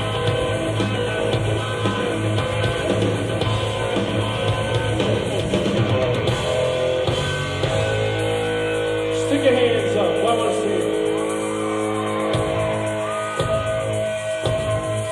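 Live hard rock band playing a song: held chords over a steady low note, with a few sliding, pitch-bending notes about ten seconds in.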